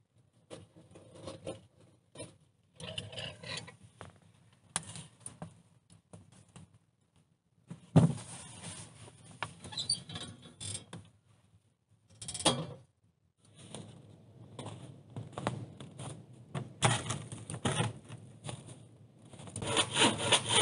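Handling noises at a small steel wood stove: irregular knocks, scrapes and clinks of the metal door and the wood and clay pot in the firebox, with a sharp knock about eight seconds in. The noise grows denser near the end.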